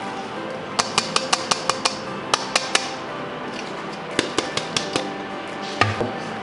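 Sharp taps on a glass blender jar knocking ground spice powder out onto paper, in three quick runs of several taps each, over steady background music.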